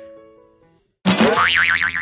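Background music notes fading out, then after a brief gap a loud cartoon 'boing' sound effect about a second in, its pitch wobbling rapidly up and down, used as a transition between clips.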